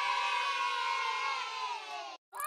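A group of children cheering together in one long held "yay", many voices at once, slowly falling in pitch.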